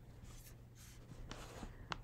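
Faint room tone with a steady low hum and a few soft, scratchy rustles.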